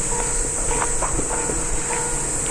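A railway level-crossing bell dinging steadily, about three dings every two seconds, as a train approaches, over a steady high-pitched insect drone. A few light clicks come through in the middle.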